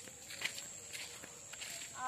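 Footsteps on a gravel road, a few scattered steps over a steady high-pitched whine.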